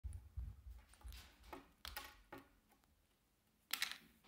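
Light clicks and taps of small objects being handled on a wooden tabletop, a few sharp ticks spaced about half a second apart, then a short, louder clatter near the end.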